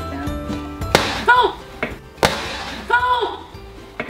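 A balloon squeezed by the sticks of a Boom Boom Balloon game bursts with a sharp bang; the bang is heard twice, a little over a second apart, each followed by a short cry, over background music.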